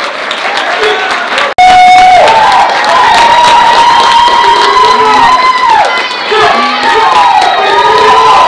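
Audience cheering with long drawn-out whoops from several voices, some trailing down in pitch. It cuts off abruptly about one and a half seconds in and comes back much louder.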